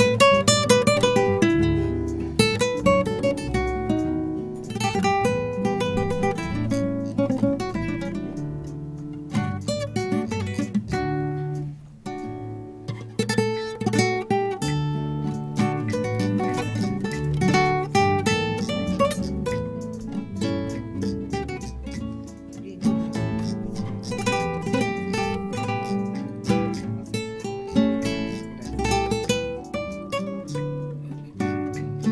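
Two acoustic guitars playing an instrumental piece together, a plucked melody over a picked and strummed accompaniment, with a brief break about twelve seconds in.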